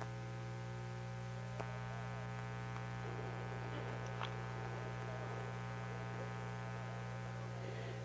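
Steady electrical mains hum, a low buzz with many evenly spaced overtones, with a couple of faint ticks.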